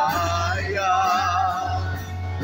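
A woman singing a slow worship song into a microphone, holding notes with vibrato, backed live by electric bass and acoustic guitar with a steady low bass line.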